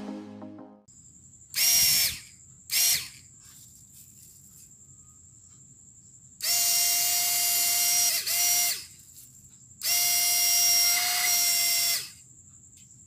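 Tiny drone motor of a homemade PVC-pipe pocket fan spinning its propeller in bursts as its push button is pressed and released: two short bursts, then two runs of about two seconds each. Each burst is a steady high whine.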